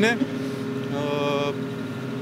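Steady low hum of an engine running nearby, continuing without change under the talk. A man's brief drawn-out hesitation sound comes about a second in.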